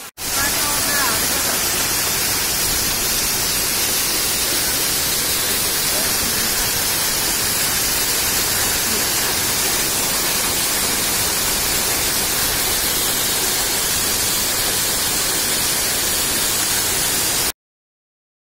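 Loud, steady rush of a small waterfall crashing onto rocks close to the microphone; it cuts off suddenly near the end.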